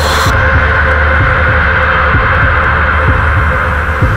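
Intro soundtrack: a loud, steady low throbbing drone with a hissing band above it, its bright top end dropping away shortly after the start.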